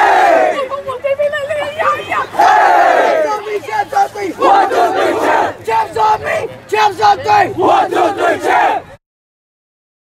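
A team of 13-and-under youth football players shouting together in a huddle chant: first a loud group yell, then a quick run of short rhythmic shouted bursts. It cuts off suddenly near the end.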